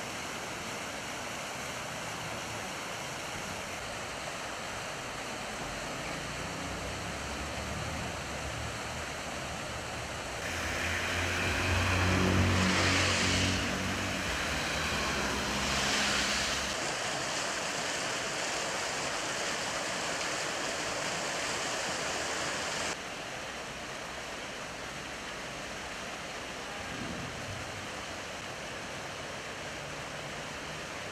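Steady splashing of small fountain jets. From about ten seconds in, a louder low rumble with an engine-like tone rises and fades over several seconds, typical of a vehicle passing.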